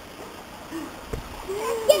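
A single short thump about a second in, over faint voices.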